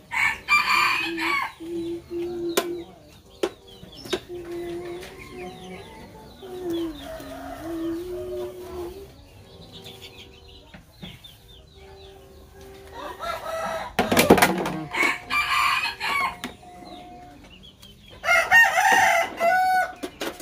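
A rooster crowing three times, near the start, in the middle and near the end, over the clink of dishes and metal trays being washed by hand.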